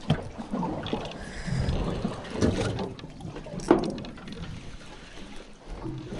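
Spinning reel being cranked to wind in a hooked snapper, with wind buffeting the microphone and a few knocks from handling the rod, the loudest a little under four seconds in.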